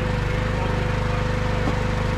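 Firewood processor's engine running steadily at idle, an even, fast low pulse with a steady whine above it.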